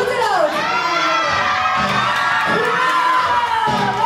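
A crowd cheering, with many high-pitched shouts and screams held and overlapping.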